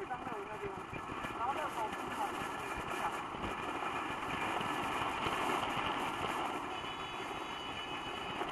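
Steady road noise inside a moving car: tyre, wind and engine rush, a little louder in the middle, with a short snatch of voice about one and a half seconds in.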